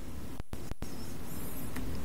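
Steady hiss of room and microphone noise, cut out sharply twice in quick succession about half a second in.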